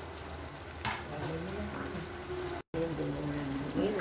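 A pot of sour fish soup simmering on the stove, a steady hiss, with a short scrape about a second in as chopped herbs are pushed off a knife into the pot. A faint voice murmurs underneath, and the sound drops out for an instant a little past the middle.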